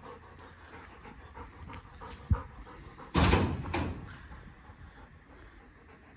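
German shorthaired pointer panting, with a short sharp knock about two seconds in and a louder noisy burst just after three seconds.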